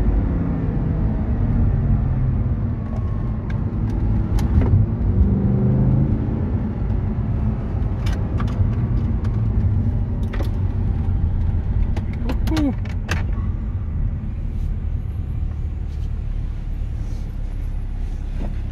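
Audi R8 V10 engine heard from inside the cabin, its revs falling at first, climbing again a few seconds in, then running lower and steady as the car slows. Several sharp clicks come in the second half.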